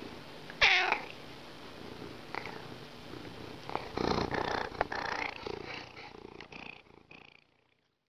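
A domestic cat gives one short meow that falls in pitch about half a second in, then a louder, rough stretch of soft cat sounds with brief chirps between about four and six seconds, fading out before the end.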